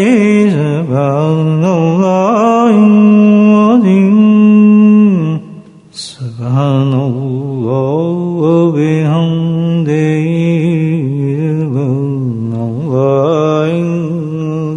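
A single voice chanting a devotional melody unaccompanied, with long wavering, ornamented held notes. It breaks off about five seconds in, a short click sounds in the gap, and the chant resumes.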